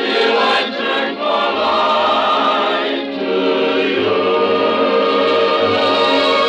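A song in performance: voices singing held notes over orchestral accompaniment, as heard on a 1951 radio broadcast recording.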